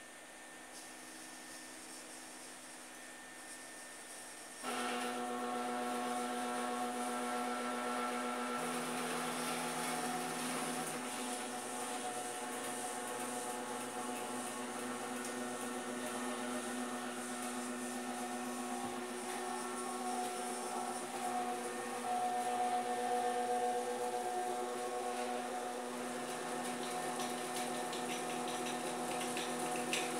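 Motors of a homemade wall-painting robot whining as it moves its arm and paint roller. The steady electric whine of several tones starts suddenly about four and a half seconds in, after faint hiss, and shifts a little in pitch now and then as the movement changes.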